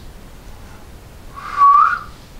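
A woman giving one short admiring whistle about a second and a half in, a single clear note that dips slightly and then rises in pitch.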